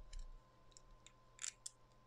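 Faint, sparse small metallic clicks of a small flathead screwdriver turning the airflow-control screw inside the deck of a Kayfun Lite MTL rebuildable tank atomizer.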